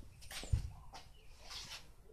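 Faint handling noise from a handheld camera, with one dull thump about half a second in and a few faint high chirps in the background.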